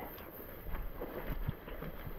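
Wind buffeting the microphone, a low, uneven rumble, with a small knock about one and a half seconds in.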